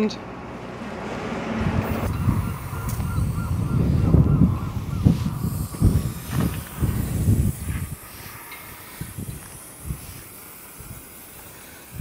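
A boatyard travel hoist running with a steady whine, under gusts of wind buffeting the microphone that are loudest in the middle and die down near the end.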